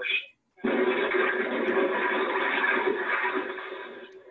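A sudden loud burst of crash noise heard down a telephone line in a recorded 999 call, starting about half a second in, holding for about three seconds and fading: the broken-down car being struck while the caller is still on the line.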